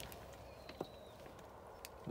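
Faint background: a steady low hum with a couple of light clicks.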